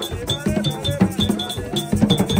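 Several hand drums beaten in a quick interlocking rhythm, with a short, high metallic ring struck over and over on the beat and voices chanting along.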